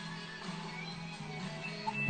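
Faint guitar music with steady low notes.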